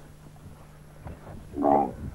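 A kneeling dromedary camel gives one short, loud call about one and a half seconds in, as a rider climbs onto its saddle.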